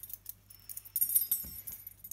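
A metal key jingling and clinking against a door's metal lever handle as it is hung on it, a bright jingle starting about half a second in and lasting about a second.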